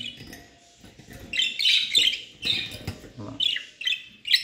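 Budgerigars chirping: three short bursts of high chirps about a second and a half, two and a half and three and a quarter seconds in.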